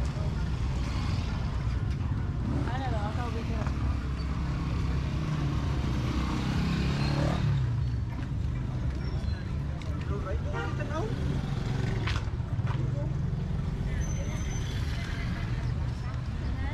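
Street traffic of motorcycles and motorcycle tricycles passing, a steady low engine rumble with one vehicle growing loudest about six to seven seconds in, mixed with the chatter of people nearby.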